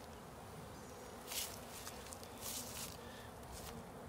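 Honeybees buzzing faintly and steadily around an open hive as frames of bees are moved over, with a couple of brief rustling noises about a second in and again around two and a half seconds.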